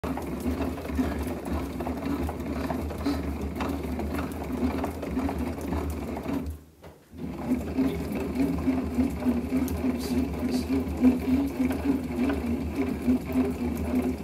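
Bat rolling machine running a 2021 Marucci CAT9 baseball bat between its pressure rollers by hand. It makes a steady, rhythmic mechanical whirring with a low hum. The sound stops briefly about halfway through, then resumes.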